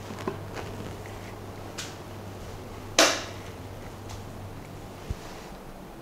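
A man moving about a small room: a few faint clicks and knocks, then one sharp click about three seconds in, over a steady low electrical hum.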